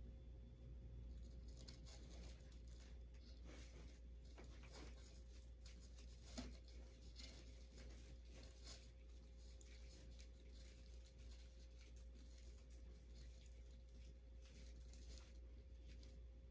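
Faint rustling and crinkling of wired craft ribbon being handled and tied onto a wreath swag, with scattered light clicks and taps, over a low steady hum.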